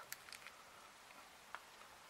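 Near silence: room tone, with a few faint clicks.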